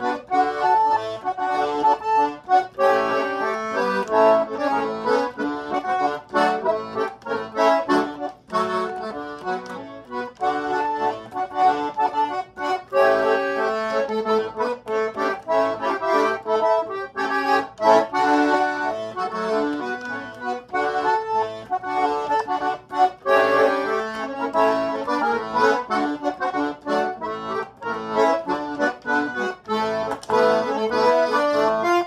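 A Hengel Chemnitzer-style concertina in C played solo: a polka, with the melody over chords in a steady, even rhythm.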